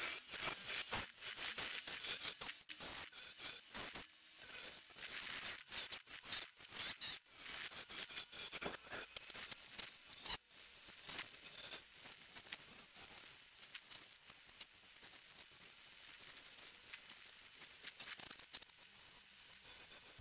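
Wood lathe spinning while a hand-held turning chisel cuts a small dark-wood blank into a ball: continuous scraping and cutting noise with many irregular small clicks and ticks.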